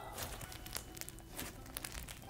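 Thick clay slime squeezed and pulled apart by hand, crackling with a run of small sharp pops: the slime's sizzles.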